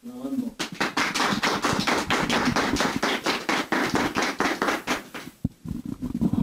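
Applause: several people clapping hands for about four and a half seconds, dying away about five seconds in.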